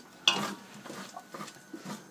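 A metal spoon stirring and scraping overdone baked beans in a stainless steel saucepan. There is one sharper scrape about a quarter second in, then light scattered scrapes and clicks.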